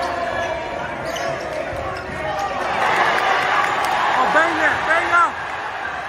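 Basketball being dribbled on a hardwood gym floor over steady crowd chatter, with a few short sneaker squeaks on the court about four to five seconds in.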